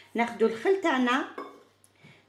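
A woman speaking for about a second and a half, then a pause.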